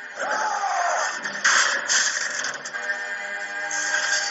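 Film fight-scene soundtrack: music with a short rising-then-falling tone under a second in and two loud, sudden hits about a second and a half and two seconds in, after which the music holds steady chords.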